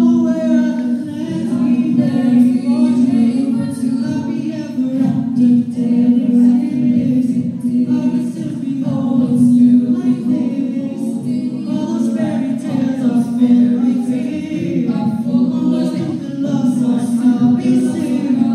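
A five-voice a cappella group singing into handheld microphones through the auditorium's sound system: layered vocal harmonies over a held low note, with no instruments.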